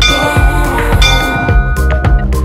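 Background music with a steady beat, over which a bell-like countdown chime sounds twice, at the start and again about a second in, each ringing on briefly.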